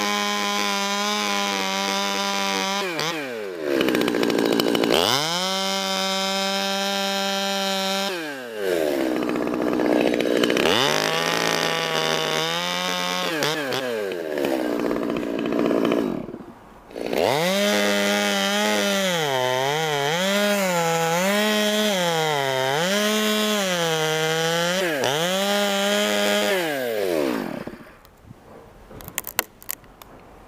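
Stihl two-stroke chainsaw revving in repeated bursts and dropping back to idle between them as it cuts through a rope-rigged maple trunk. In the last long run the pitch dips and recovers several times under the load of the cut. The engine then stops, leaving a few light clicks.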